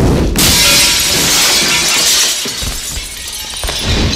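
Glass shattering in a movie fight: a sudden crash about a third of a second in, its spray of breaking glass fading over the next two seconds.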